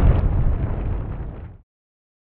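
Loud, deep rumbling noise that fades away and stops about one and a half seconds in.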